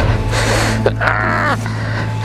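Heavy, strained breaths and a short grunt from a rider wrestling a stuck dirt bike, about a second in. Under them runs the steady low hum of the Yamaha WR250R's idling single-cylinder engine.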